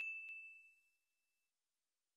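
Bell-icon sound effect: a single high ding rings out and fades away over the first second or so, with a faint click about a third of a second in.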